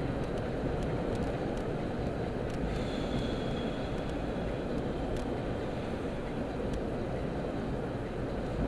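Steady road and engine noise heard inside a moving car's cabin, with a faint high whine lasting about a second and a half around three seconds in.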